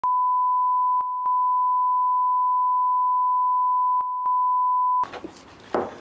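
Steady 1 kHz line-up test tone played with broadcast colour bars. It dips briefly twice about a second in and twice again about four seconds in, then cuts off suddenly about five seconds in. Quiet room sound with a single knock follows.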